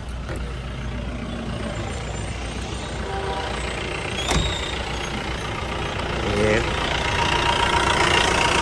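Mahindra Bolero SLX DI's diesel engine idling steadily, with the noisy idle that the owner says this model always has. A single sharp click about four seconds in.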